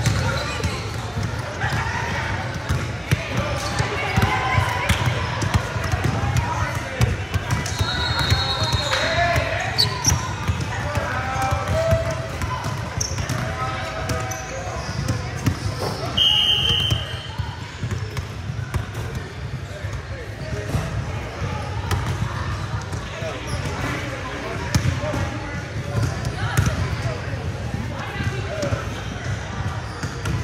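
Basketballs bouncing on an indoor gym court during a basketball tryout, heard over a background of players' voices. Two short high-pitched squeals come through, one about a quarter of the way in and one about halfway.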